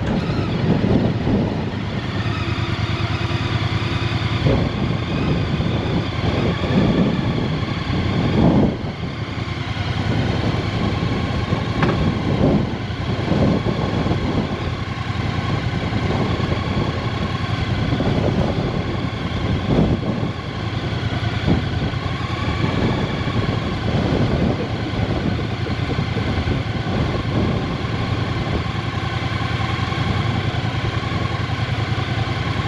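Strong wind buffeting the microphone in uneven gusts, over a motorcycle engine idling steadily.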